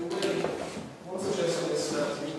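Voices of people talking in a large hall, the words indistinct.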